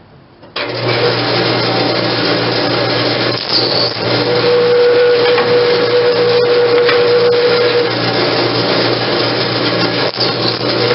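Benchtop drill press motor running with a steady hum, starting abruptly about half a second in, as a twist bit drills into a wooden block. A steady whine joins in about four seconds in and drops away about eight seconds in.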